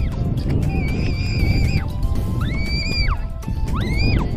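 Background music: a high, whistle-like melody of about four long held notes, each sliding up at its start and down at its end. Under it runs a steady low rumble.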